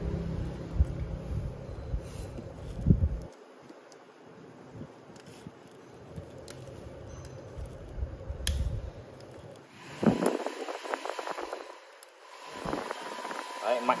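Small 12 V clip-on electric fan running strongly on its number 2 speed, powered from a 12 V battery: a steady low hum and air rush that drops away sharply about three seconds in. Scattered scrapes and clicks follow.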